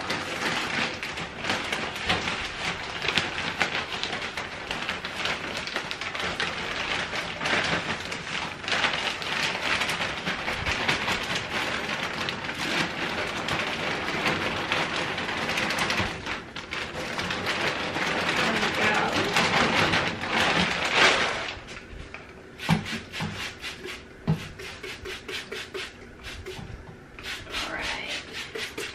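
Loose coconut-fibre substrate pouring from a plastic bag into a glass tank: a steady rustling hiss with the bag crinkling. It stops about three-quarters of the way through, leaving quieter scattered taps and rustles.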